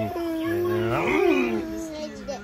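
Toddler's long, high squealing laugh, held almost on one pitch for nearly two seconds, swelling up and back down in the middle, as he is tickled on the belly.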